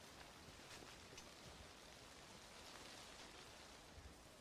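Near silence: a faint, even hiss of outdoor ambience.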